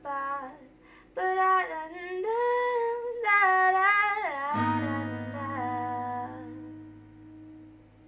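A woman sings to acoustic guitar accompaniment. About four and a half seconds in, her last note slides down and stops, and a strummed guitar chord rings on, slowly fading away.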